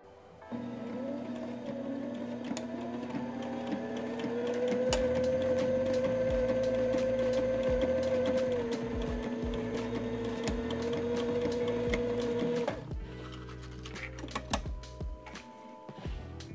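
A Sailrite Ultrafeed LSZ-1 walking-foot sewing machine stitches a straight seam through two layers of canvas. Its motor picks up speed and rises in pitch over the first few seconds, then runs steadily and stops suddenly a few seconds before the end. Background music plays underneath.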